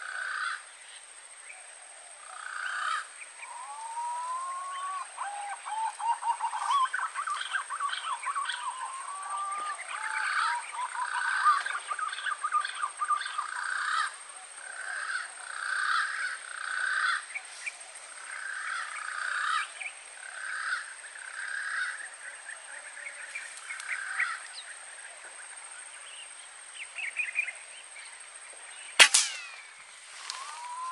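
Green pigeons (punai) calling: gliding whistled notes, then a run of short repeated phrases, over a steady high whine. About a second before the end comes a single sharp crack, the loudest sound, plausibly the air rifle's shot.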